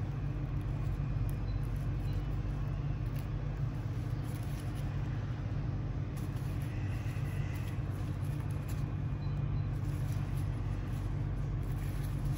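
A steady low background rumble, even throughout, with a few faint light clicks over it.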